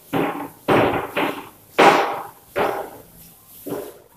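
Blackboard duster rubbing chalk off a chalkboard in about six separate strokes, each starting sharply and fading quickly.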